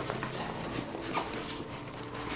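Nylon ripstop fabric of a travel duffel rustling faintly as hands handle the bag, with a small click at the start.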